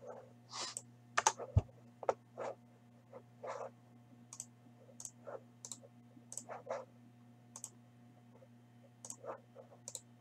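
Irregular clicks and taps of a computer mouse and keyboard while a random draw is set up, with a louder knock about one and a half seconds in, over a faint steady electrical hum.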